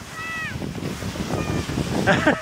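Skis sliding over packed snow with wind rushing over the microphone at skiing speed. A brief high voice sound comes in the first half-second.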